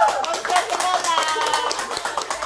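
A small group of people clapping their hands in quick, uneven claps, with excited voices calling out among them.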